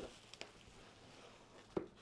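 Faint handling noise of guitar packaging, plastic bubble wrap and a cardboard box, as the wrapped guitar is lifted out: a few soft ticks, then a single sharp click near the end.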